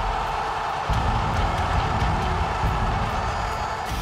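Dramatic trailer music: a deep, heavy bass under a sustained rushing hiss.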